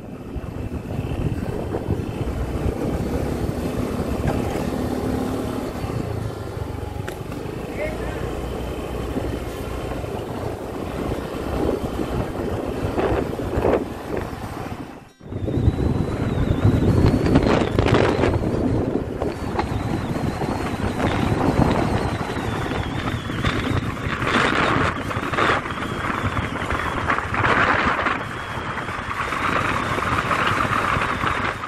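Motorcycle running along a road with wind noise rushing over the microphone; the sound breaks off briefly about halfway and resumes.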